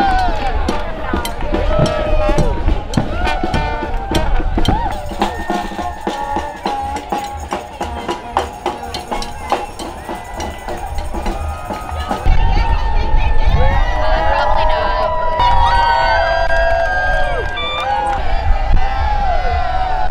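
Parade crowd with many voices calling and cheering, over drumming and music from passing marchers. The low rumble gets louder about two-thirds of the way through.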